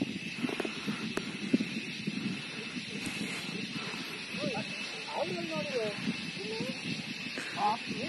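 People's voices talking over a steady high hiss and a low rumble. The voices start about halfway through.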